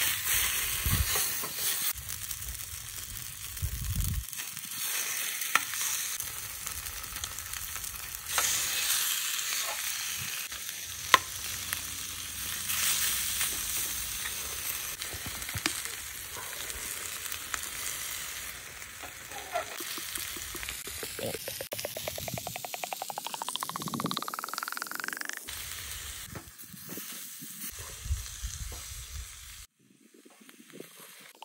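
Chicken breast sizzling and frying in a hot metal pan on a portable gas camp stove, a steady hiss with scattered clicks and taps. About two-thirds of the way through, a tone rises steadily in pitch for about four seconds.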